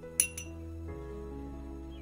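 Two quick, sharp clinks of a glass bowl, about a fifth of a second apart, each ringing briefly, over steady background music.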